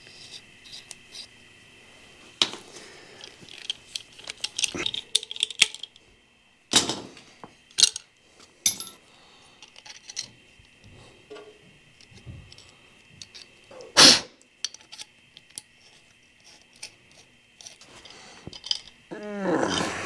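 Small metal fuel-line fittings and hand tools clinking and tapping as they are handled and fitted into the ports of a steel fuel tank, with a few sharper knocks, about seven and fourteen seconds in the loudest. A faint steady high hum runs underneath.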